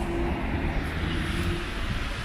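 Street traffic: a vehicle engine running with a steady hum over an even low background noise.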